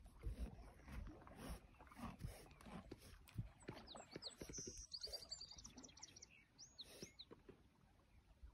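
Yearling colt grazing close by: quiet, irregular crunches of grass being torn and chewed. A small bird chirps and gives a quick trill from about four to seven seconds in.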